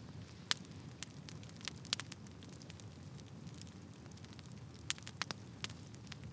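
Faint crackling fire sound effect: irregular sharp pops and snaps over a low rumbling hiss.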